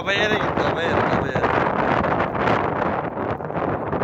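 Wind buffeting the microphone during a snowstorm, a loud steady rushing, with a brief voice in the first half second.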